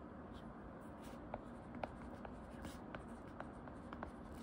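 Plastic tip of an Apple Pencil-style stylus tapping and writing on an iPad's glass screen: about five faint, sharp taps, spread unevenly over a steady low hiss.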